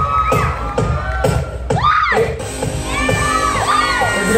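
Audience cheering and whooping in a theatre over loud music with a steady beat.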